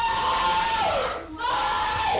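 A child screaming and wailing in distress: one long high cry that drops in pitch about a second in, then a second cry after a brief break.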